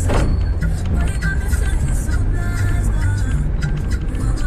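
Car driving with a steady low engine and road rumble, a brief rush of noise right at the start, and music playing over it.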